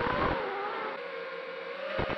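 Brushless motors of an FPV racing quadcopter whining as it flies; the pitch drops in the first half second and then holds steady and a little quieter, as at eased throttle.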